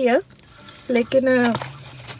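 A man's voice speaking in short phrases.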